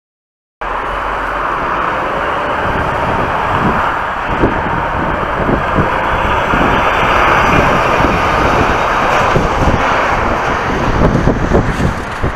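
Volvo articulated lorry driving past, a steady engine and road noise that starts suddenly about half a second in, with irregular low thuds underneath.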